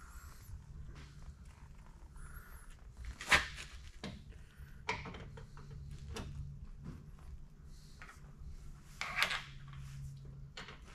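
A few scattered metallic knocks and clicks as a lathe cross slide is jiggled by hand on its saddle to couple the two halves of the cross-slide screw. The loudest knock comes about three seconds in and another near the end.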